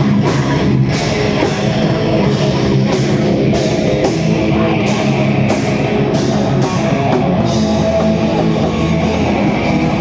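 Live heavy rock band playing loud, with distorted electric guitar and a drum kit. Cymbals strike about twice a second and stop about seven seconds in.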